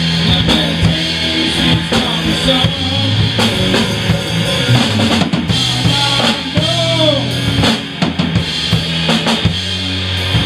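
Live rock band playing an instrumental passage: distorted electric guitars over a drum kit with kick and snare hits, no singing.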